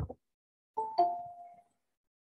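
Google Meet join-request chime, a two-note falling ding-dong about a second in that rings out briefly, signalling that someone is asking to join the call.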